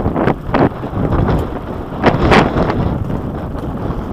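Mountain bike rolling fast over a gravel dirt track: tyre rumble on the stones with wind on the microphone, broken by several sharp rattles of the bike over bumps, the loudest about two seconds in.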